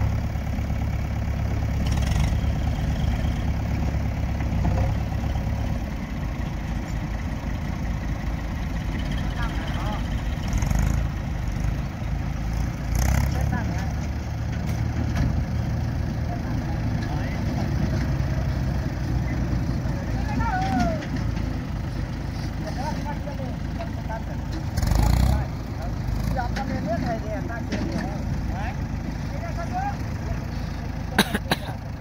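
Diesel engine of a JCB backhoe loader running steadily with a low rumble. Voices can be heard in the background, and a few brief louder bursts stand out, the loudest about five seconds before the end.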